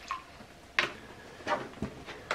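A few light clicks and knocks from a plastic hydrogen peroxide bottle being handled and set down on a wooden table after the pour: a sharp click a little under a second in, then two softer ones.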